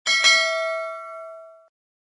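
Bell-like notification ding sound effect, struck twice in quick succession. It rings out as a clear chime and fades away within about a second and a half.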